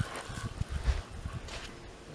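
Footsteps on a sandy riverbank: a few irregular soft thuds, the loudest a little under a second in.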